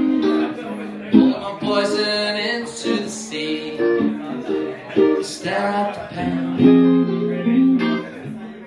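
Guitar playing a slow passage of picked and strummed chords, each left to ring, with a fresh chord about every second.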